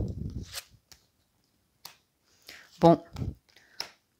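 An oracle card being drawn from the spread and laid on a cloth mat: a soft rustle at first, then a few light clicks and taps of card on card.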